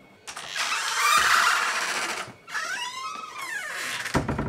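A door creaking open, its hinges giving a long, wavering squeal in two stretches.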